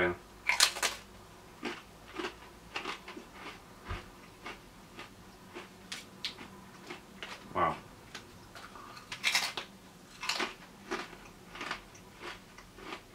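A thick-cut Slabs potato crisp being bitten into and chewed: sharp crunches in the first second, then a run of smaller, irregular crunches, with a louder cluster about nine to ten seconds in.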